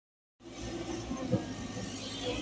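Caterpillar 312D tracked excavator's diesel engine running steadily, starting just under half a second in, with one brief louder sound just over a second in.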